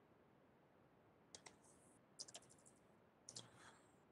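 Faint computer keyboard typing: three short groups of keystroke clicks, the middle one a quick run of five or six.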